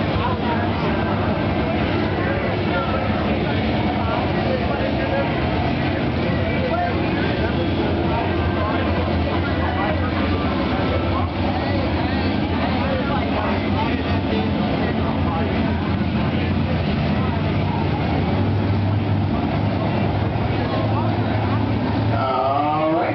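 A field of pure stock dirt-track race cars circling together at pace speed, their engines a steady, even rumble that grows a little stronger near the end as the pack comes around.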